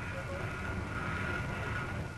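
Steady low mechanical rumble of heavy machinery, the engine noise of a power-driven grab crane, with a faint steady high whine above it.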